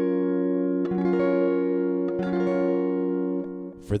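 F-sharp major seven barre chord (fifth-string root, ninth fret) strummed from the fifth string to the first on a clean electric guitar. It rings, is strummed again about a second in and again just after two seconds, then fades out near the end.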